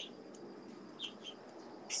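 Faint outdoor background noise with two short bird chirps a little after a second in.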